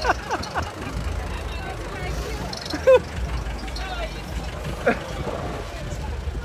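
Busy street ambience: a steady low rumble of vehicle engines, with scattered voices and laughter over it, one briefly loud about halfway through.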